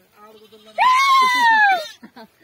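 One long, loud bleat from a flock of sheep and goats, starting about a second in and falling in pitch, after a quieter stretch.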